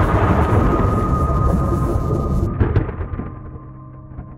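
Logo-reveal sound effect: a loud thunder-like rumble that cuts off about two and a half seconds in, followed by a few crackles and a ringing chord fading out.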